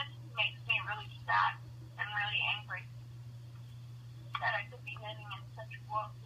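A person talking in short phrases with the thin, narrow sound of a telephone line, over a steady low hum.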